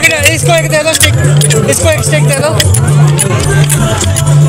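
Loud dance music with a repeating bass beat and a wavering melody line, with dandiya sticks clacking together many times over it.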